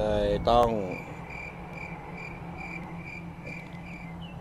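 A high-pitched chirp repeated evenly, about two to three times a second, over a faint steady low hum.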